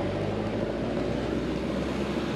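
A car's engine running with a steady low hum.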